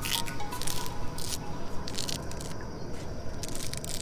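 A fleshy spatterdock water-lily stem being torn and split open by hand, giving wet crackling and squishing with a few crisp snaps, as the stem is opened to expose a bonnet worm inside.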